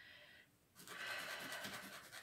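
A small pill rubbed back and forth on sandpaper, starting about a second in as quick, even scratching strokes, grinding the tablet down to a lower weight.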